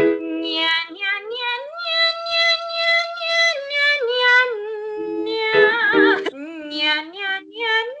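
A woman's voice singing a nasal 'nya nya nya' vocal exercise in short scale patterns, stepping from note to note with quick repeated syllables and held pitches.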